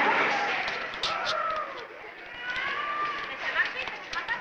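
Indistinct voices calling out over hurried footsteps on a hard floor, with a general hubbub.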